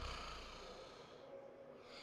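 A faint exhale into the commentator's close microphone: a soft hiss with a brief low rumble at the start, fading away over the first second and a half.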